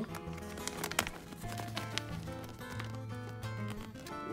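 Background music with sustained notes over a low bass line, with a few faint clicks.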